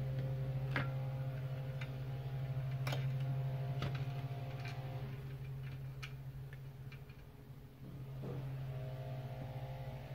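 A steady low hum runs under scattered sharp light clicks, like metal tweezers and small tools tapping and being handled on a circuit board.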